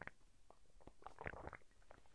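Faint sounds of a man sipping from a mug and swallowing, a few soft mouth clicks, the most of them about a second and a half in.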